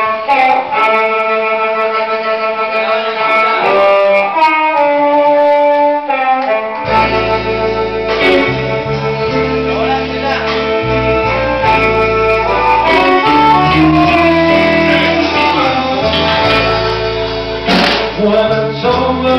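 Live blues band starting a song, loud: the opening notes begin abruptly, and a heavy low end comes in about seven seconds in as the full band plays.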